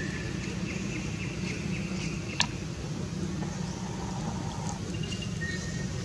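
A steady low motor hum runs throughout. Over it comes a faint, wavering high call in the first half, and a single sharp click about two and a half seconds in.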